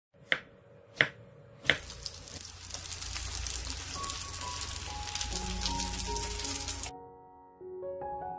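A knife cutting through a round zucchini onto a wooden cutting board, three sharp strikes about two-thirds of a second apart. Then egg-battered zucchini slices sizzling in oil in a frying pan; the sizzle stops suddenly near the end, with soft piano music coming in about halfway through.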